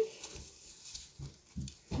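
Faint handling noise as a disposable face mask is put on and pressed into place: a few soft, low bumps and light rustling.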